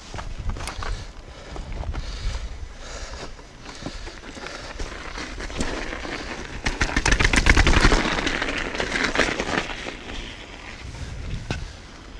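Mountain bike riding down a snowy path: the tyres crunch over snow and the bike rattles, with the densest crackling and loudest stretch from about six and a half to nine and a half seconds in.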